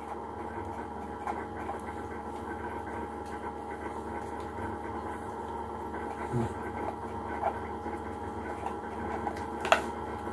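A steady background hum of a small room, with faint scratching of a pen writing on a small slip of paper and a few light clicks of paper being handled, the sharpest near the end.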